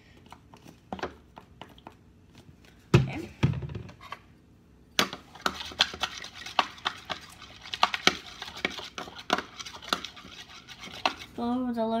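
Spoon stirring a runny slime mixture of activator, baby oil and lotion in a bowl: quick, repeated clinks and scrapes against the bowl, starting about five seconds in. Before that, a few light clicks and one loud thump about three seconds in as the lotion goes in.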